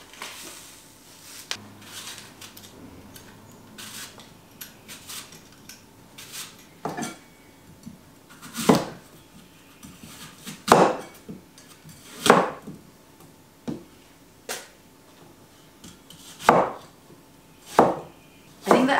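Kitchen knife cutting a green apple on a wooden chopping board: about eight separate sharp strikes, one to two seconds apart, through the second half, with fainter clicks of handling before them.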